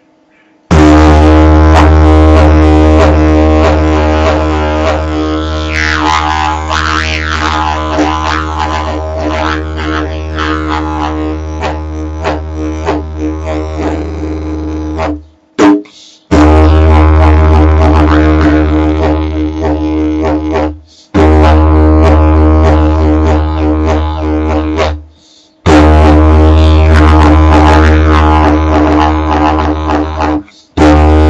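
Didgeridoo made from a river-found sapling, pitched in D, played as a deep continuous drone with overtones that sweep as the mouth shape changes. The drone runs unbroken for about fifteen seconds, then stops briefly for breath every four to five seconds.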